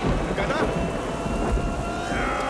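Heavy rain pouring down over a deep, continuous low rumble, as in a film's rainstorm sound mix.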